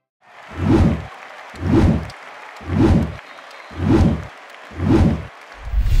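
An electronic sound effect of five evenly spaced low booming pulses, about one a second, each with a swish over it. A sustained low rumble starts near the end.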